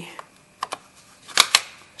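Plastic battery terminal cover being pressed into place: a couple of light clicks, then two sharp snaps in quick succession about a second and a half in as it latches.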